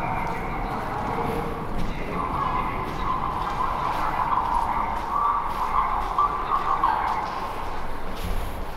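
Ambience of a large tiled underground concourse: a steady low hum with distant, indistinct voices that swell in the middle, and the walker's footsteps on the hard floor.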